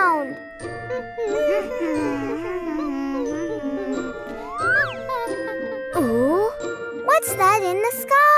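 Cartoon episode-opening jingle with tinkling chime tones and a quick rising whistle just before the midpoint. Near the end come the characters' wordless cartoon voices.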